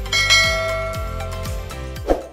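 A bright bell-like chime rings out just after the start and slowly fades, over background music with a steady deep drum beat: the notification-bell sound effect of an animated subscribe button.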